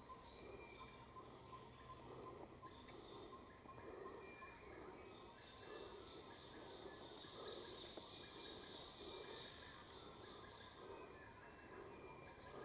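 Faint forest insects: a steady high, finely pulsed trill, joined by a second, lower trill about halfway through.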